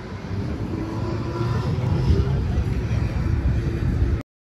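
Open-air city ambience: a steady low rumble of background noise with faint voices of people nearby, growing a little louder about a second in.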